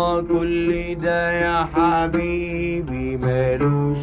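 Music: a plucked oud with a held, gliding melodic line, in a passage of an Egyptian song between sung verses.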